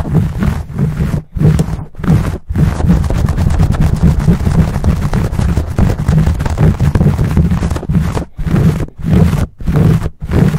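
Fingers and nails scratching and rubbing fast and hard on a fuzzy microphone cover, picked up right at the microphone as loud, deep rustling. Separate strokes with brief gaps at first, an unbroken stretch of rapid scratching through the middle, then separate strokes again near the end.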